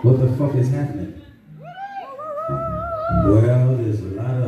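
Live band music on stage: a steady low bass note, with a wavering, sliding melody line that rises and holds through the middle.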